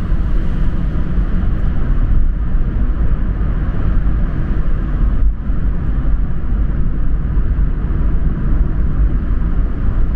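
Steady low rumble of a car driving through a road tunnel, heard from inside the cabin: tyre and engine noise with no sudden events.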